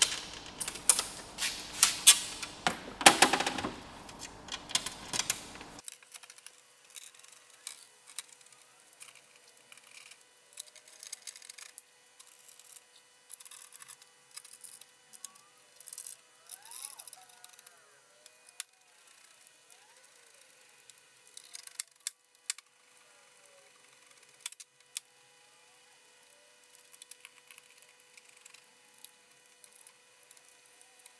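Clattering and knocking of a stainless steel backing plate being handled and fitted against a vehicle's rear door, loudest in the first six seconds, then only faint scattered clicks.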